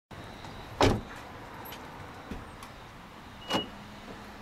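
A car door shut with a single solid thump, followed by a few faint clicks. Near the end comes a second thump with a short high beep, typical of the door locks engaging by keyless entry.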